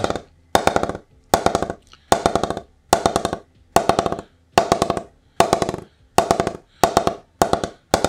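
Wooden bat mallet tapping the face of a new, unoiled Gray-Nicolls Alpha Gen 1.0 English willow cricket bat in a tap-up test to find its hitting area. The taps come in short rapid flurries, a little over one flurry a second, each strike a ringing wooden knock.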